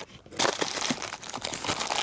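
Clear plastic parts bags crinkling and rustling as hands dig through a cardboard box of small engine parts, starting about half a second in.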